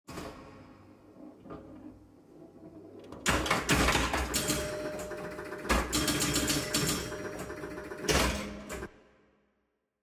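Intro music with sound effects: a quiet build-up, then a sudden loud hit a little over three seconds in, further hits near six and eight seconds, and a fade-out about a second before the end.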